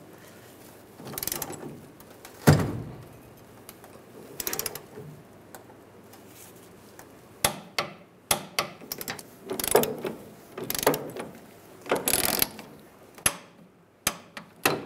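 Socket torque wrench ratcheting in short runs of clicks while tightening the fuel tank strap bolts to 30 ft-lb. The clicking is sparse at first and comes in quicker, denser runs in the second half.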